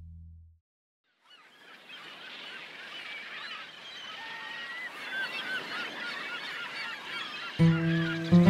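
A flock of gulls calling, many short overlapping cries over a soft steady hiss, fading in after a moment of silence. Music comes in near the end.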